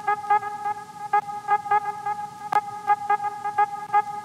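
Background music: a held electronic tone with a steady beat of short notes.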